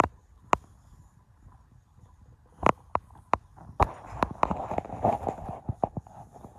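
Footsteps of a person walking: a few separate sharp clicks at first, then from about four seconds in a quicker run of steps over a scuffing noise.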